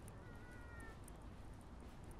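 A single short animal call, one held note a little under a second long starting about a quarter second in and dipping slightly at its end, heard faintly over soft footsteps on paving and a steady low background rumble.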